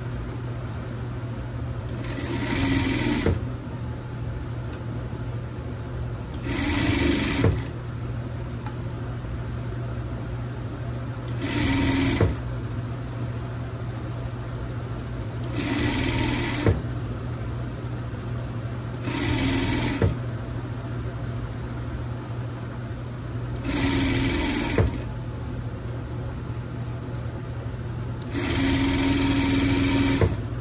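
Electric sewing machine stitching in seven short runs of about a second each, roughly every four seconds, each run ending with a sharp click as the machine stops. A steady low hum continues between the runs.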